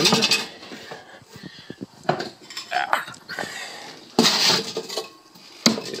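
Metal cans and a metal kettle being handled and fitted together: a string of clinks and knocks of tinplate on tinplate, with louder scraping bursts at the start and about four seconds in.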